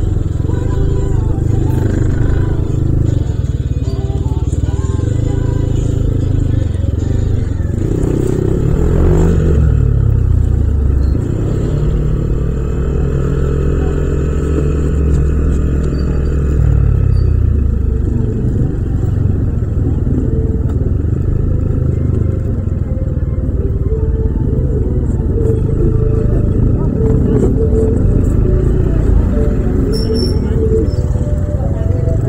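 Yamaha Aerox 155 scooter's single-cylinder engine running as the scooter pulls away and rides at low speed through traffic, its note rising and falling with the throttle. Street noise from other vehicles is mixed in.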